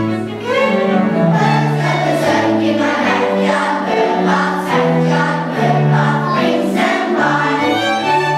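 Children's choir singing a song in unison, with bowed strings (violin and cello) holding low sustained notes underneath.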